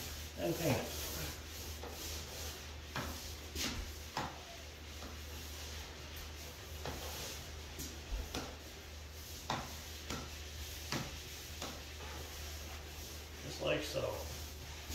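Paint pad rubbing along drywall just under metal ceiling trim, which is held out from the wall with a drywall taping knife, with occasional light clicks from the trim and knife.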